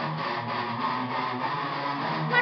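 Instrumental guitar music: strummed guitar over steady bass notes in an even rhythm.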